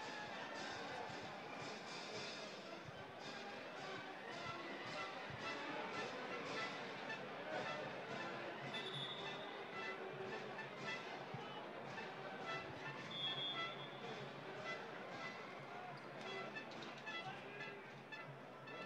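Faint music over the arena sound system, with voices in the crowd and a ball bouncing on the wooden court now and then, echoing in a large hall.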